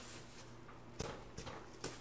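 A few faint, soft taps, about half a second apart, of a football bouncing off a man's head as he juggles it.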